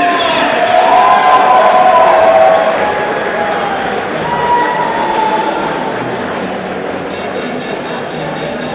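Fight crowd cheering and shouting, loudest in the first couple of seconds and then dying down as the round ends.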